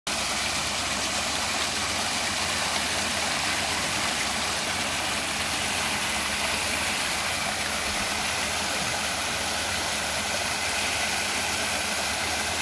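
Solar-powered paddlewheel aerator's eight-blade paddlewheels spinning and churning pond water, a steady, continuous splashing.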